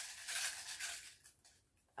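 Soft rustling of small paper labels as a hand rummages among them to draw one, fading out after about a second and a half.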